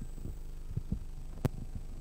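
Steady low electrical hum from a conference room's table microphone system, with a few faint soft knocks and one sharp click about one and a half seconds in.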